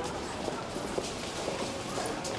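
Irregular clacks and footsteps of passengers pushing through subway station turnstiles, a busy, uneven patter of knocks.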